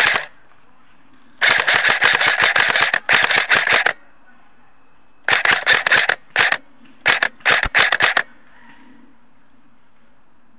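A Nuprol Jackal Alpha airsoft electric rifle (AEG) firing on full auto in rapid bursts: a brief one at the start, then a long burst of about a second and a half with a shorter one after it, then two clusters of short bursts.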